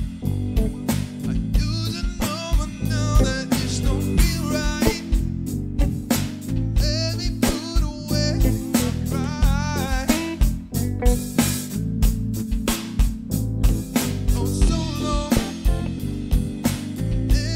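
A band playing a blues-rock jam: a Roland TD-25KV electronic drum kit keeping a steady beat under electric guitar and a low bass line, with wavering sustained melody notes above.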